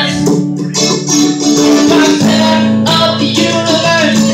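Acoustic string trio playing live, with mandolin, acoustic guitar and acoustic bass strumming and picking steady chords.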